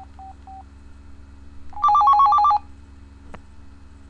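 Cell phone ringing with an incoming call: three short electronic beeps, then a loud burst of ringtone trilling rapidly between two pitches for under a second. A single sharp click follows near the end.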